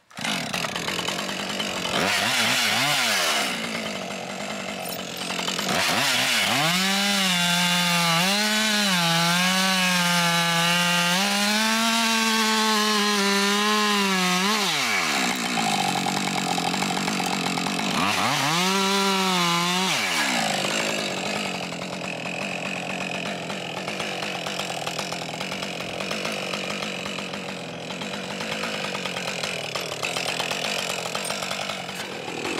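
Husqvarna 550 XP Mark II two-stroke chainsaw running and cutting through ash logs. The engine note rises and falls several times as the saw is revved and bears into the wood.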